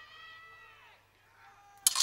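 Scattered high-pitched whoops and screams from a theatre audience, fading away within the first second. Near the end, loud sharp hits break in as the performance's music starts.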